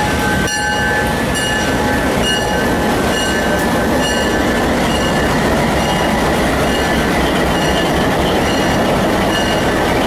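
MLW M420 diesel locomotive rolling slowly past at close range with its engine running. Wheels squeal high at first, then fade out about a second in, and there is a regular ticking about twice a second.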